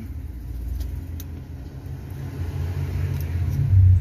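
Low rumble of a motor vehicle's engine, growing louder toward the end, with a couple of faint light clicks about a second in.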